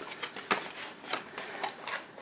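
Cardboard trading-card boxes being handled: a quick run of light clicks, taps and rustles as the boxes are moved against each other and the cardboard shelf.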